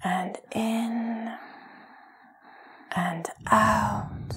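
A woman's soft, breathy voice gives two short, drawn-out breathing cues about three seconds apart, one at the start and one near the end.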